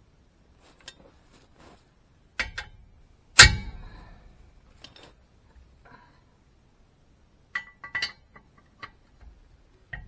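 Metal clinks and clanks of a large wrench being fitted onto a seized lug nut on a truck wheel: scattered light clicks, with two sharper clanks around two and a half and three and a half seconds in, the second the loudest and ringing briefly.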